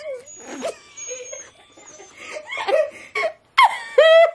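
A woman laughing in breathy, broken bursts.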